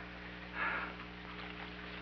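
Steady low hum of an old optical film soundtrack, with one short, soft breath-like rush of noise about half a second in.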